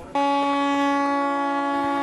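A single steady horn-like tone held at one pitch for about two seconds, starting and cutting off abruptly.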